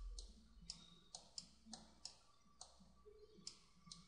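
Faint, sharp clicks, about ten at irregular intervals, from the computer input device drawing handwritten strokes on screen.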